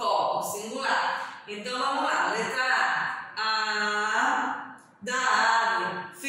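A woman speaking in Portuguese, with short pauses and some drawn-out syllables.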